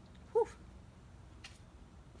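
A single brief, high vocal sound just under half a second in, its pitch bending up and back down, heard as an exclaimed 'whew'. A faint click follows about a second later.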